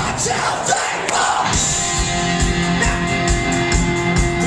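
Punk rock band playing live and loud through a club PA, recorded from the crowd: distorted electric guitars, bass and drums. The drums and bass drop out briefly about half a second in, and the full band crashes back in at about a second and a half with a steady kick-drum beat.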